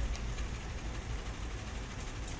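A steady low rumble with a faint even hiss over it, like machinery or distant engine noise running in the background.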